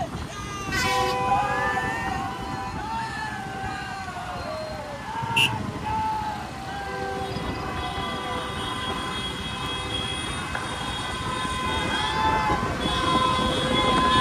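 Several vehicle horns sounding at once, held and overlapping at different pitches, with voices shouting over them.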